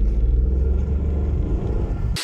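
A car engine running with a low rumble as the car drives off, heard from inside the cabin.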